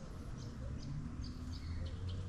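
Small birds chirping, a scatter of short high calls, over a steady low background rumble.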